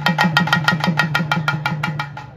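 A drum beaten fast with a stick, in a rapid, even run of strokes over a steady low drum tone.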